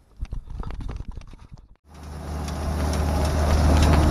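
A few scattered clicks and knocks, then from about two seconds in a John Deere tractor engine running steadily, heard from inside the cab, a low drone that grows louder.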